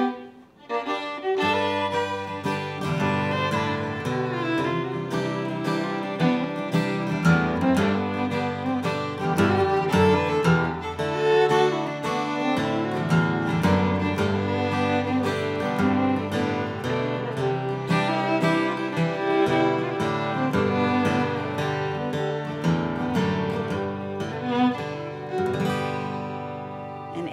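Fiddle and acoustic guitar playing a Cajun waltz together, the guitar in open chords so that everything rings. The music starts about a second in.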